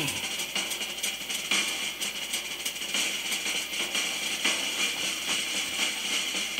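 Old 1972 live concert recording of a rock drum solo: a fast, dense run of stick strokes on the drum kit under a wash of high hiss.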